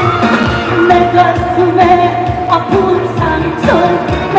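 A woman singing a Korean trot song live over a backing track with a steady beat, amplified through stage PA speakers, with long held notes that glide between pitches.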